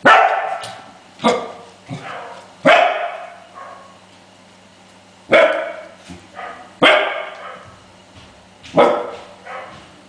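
Adult Pembroke Welsh Corgi barking in loud single barks, six strong ones a second or two apart with softer barks in between.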